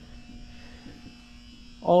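A faint steady low hum through a short pause; a man's voice starts again near the end.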